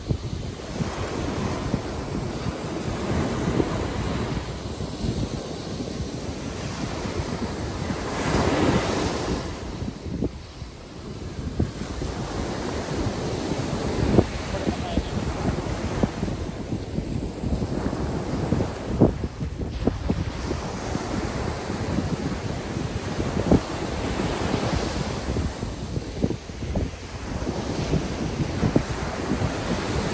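Ocean surf breaking and washing up a sandy beach in repeated swells, with wind buffeting the microphone.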